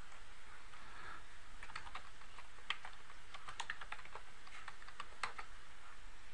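Computer keyboard being typed on, a short irregular run of key clicks that starts a little under two seconds in and stops just after five seconds, as a two-word name is typed.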